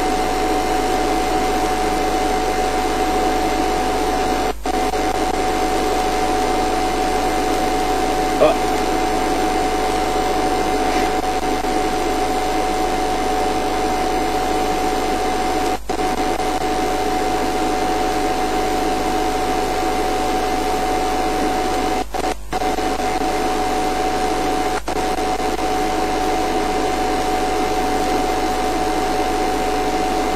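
Steady hiss and hum of a live broadcast audio feed, with one constant mid-pitched tone running through it. The sound drops out completely for split seconds a few times.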